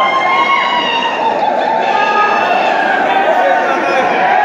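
A loud crowd of many voices talking and shouting over one another, steady throughout.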